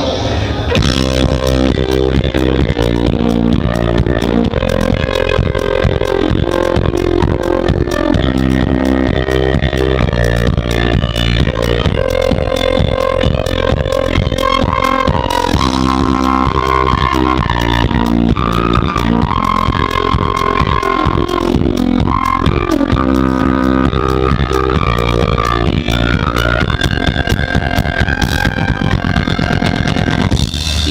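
A live rock band plays electric guitar and drums without pause, with a flute melody entering about halfway through.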